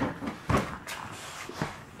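Small plastic crayon-holder cases knocking and scuffing on a hardwood floor as a toddler walks in them: a few separate knocks.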